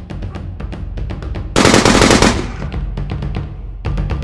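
A loud burst of rapid gunfire sound effect, lasting under a second, about one and a half seconds in, dying away after it. It plays over action music with a steady, fast drum beat.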